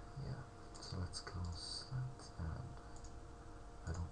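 Computer mouse clicking several times, with soft low thumps from handling on the desk, over a faint steady electrical hum.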